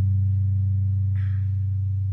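A guitar chord left ringing, one low sustained sound with steady overtones slowly fading away.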